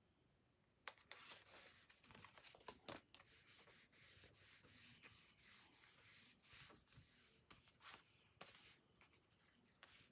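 Hands sliding and rubbing over cardstock in a string of short strokes, starting about a second in, as a paper panel is pressed and smoothed down onto a card base.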